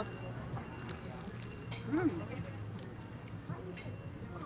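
Crunching bites into the crisp baked crust of a Taiwanese pepper cake (hujiao bing), a few sharp crunches with a brief "mm" between them, over a low steady background hum.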